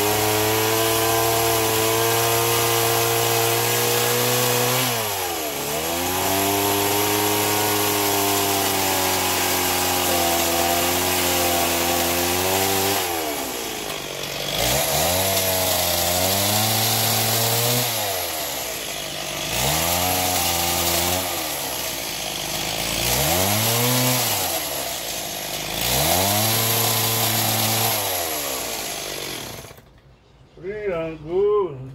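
Chainsaw running and cutting wood. Its pitch holds steady at first, then sags and climbs back several times in a series of shorter spurts, and the saw stops abruptly at the end.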